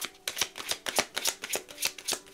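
A deck of cards being shuffled by hand: a quick run of crisp card clicks, several a second.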